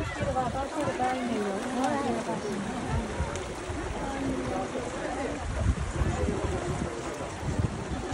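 Voices of people talking nearby, with gusts of wind buffeting the microphone.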